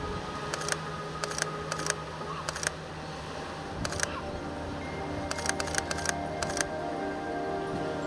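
Sony A7 II mirrorless camera's shutter firing about a dozen times, in irregular single clicks and quick pairs, over soft background music.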